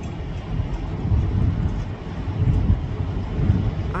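Low, uneven outdoor rumble with no clear pitch, swelling a few times.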